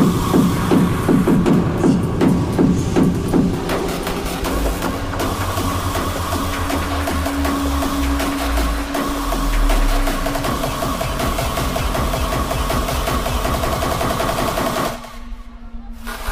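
Hard techno DJ set: an even, driving kick-drum pulse under held synth tones. Near the end the music almost cuts out for about a second in a break.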